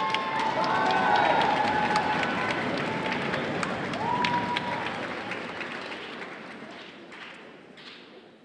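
Audience applauding with shouted cheers. The applause swells in the first second and dies away near the end.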